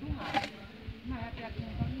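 Voices talking in short snatches, with a brief scratchy burst about a third of a second in.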